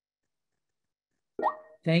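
Near silence on a video-call audio line for over a second. Then a short pitched vocal sound with a rising tone, and speech begins near the end.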